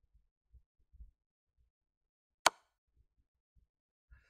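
An online chess board's move sound effect: one sharp wooden click about two and a half seconds in, as the opponent's rook is played.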